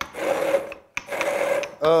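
Pestle grinding pesto in a stone mortar, in repeated grinding strokes about once a second with short pauses between them.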